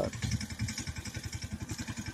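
An engine running steadily in the background, with a fast, even low pulse.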